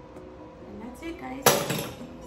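A single sharp knock about one and a half seconds in, as the Ninja blender's blade lid comes off the cup and is set down on the stone countertop, over quiet background music.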